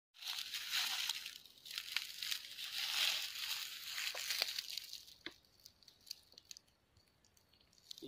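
Dry leaf litter crunching and crackling, dense and loud for about the first five seconds, then thinning to a few scattered crackles.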